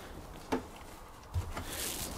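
Faint handling noises: a short sharp click about half a second in and a soft low thump a little later, over a quiet outdoor hiss.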